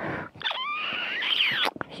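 High whistled animal calls, likely birds: several notes gliding up and down at once for about a second, then stopping abruptly.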